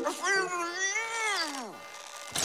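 A cartoon character's long, strained whining cry, rising a little and then falling away in pitch, from someone pinned and struggling.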